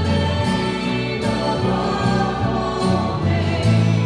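Choir singing a hymn, with held low accompaniment notes underneath.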